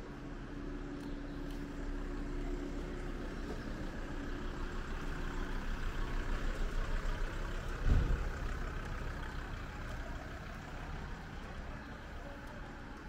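A van's engine running close by, steady at first and swelling in loudness toward the middle, with a single low thump about eight seconds in.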